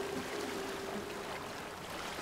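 Faint steady rushing of water, like gentle surf, under a held low note that dies away near the end.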